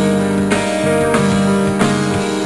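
Live rock band music: strummed guitar over held keyboard chords, with a steady drum beat.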